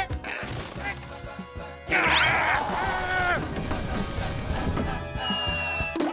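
Cartoon music with comic sound effects of a palm tree being climbed and a coconut knocked loose: wooden knocks and cracks, and a sudden loud noisy burst about two seconds in.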